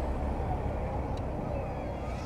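Outdoor ambience: a steady low rumble with faint voices of people in the background.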